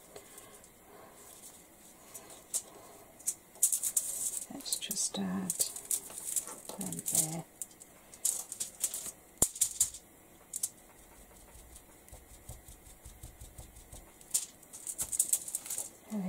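Sponge ink dauber dabbing ink through a plastic stencil onto card. The taps come in several short runs of quick, light pats, with pauses between them.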